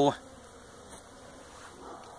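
Faint, steady buzzing of honeybees around an opened hive.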